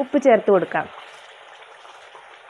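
Brief speech, then from about a second in a steady low hiss of the dates pickle mixture simmering in the pan.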